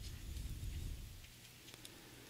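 Quiet room tone: a faint low rumble that fades out after about a second, then a steady faint hum with a couple of faint ticks near the end.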